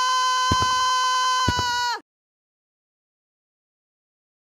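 A single long, high-pitched, steady tone with a rich, even set of overtones, cut through by dull thumps about once a second; it dips and cuts off about two seconds in, leaving silence.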